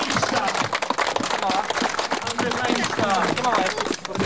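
A crowd applauding: dense, continuous hand-clapping with voices mixed in.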